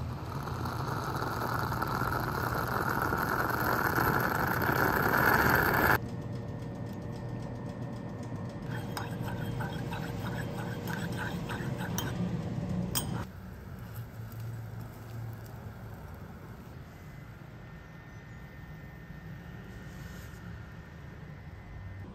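Stovetop moka pot hissing and gurgling as the brewed coffee rises into the top chamber, building steadily for about six seconds and then cutting off. After that, a metal spoon clinks repeatedly against a mug as coffee is stirred.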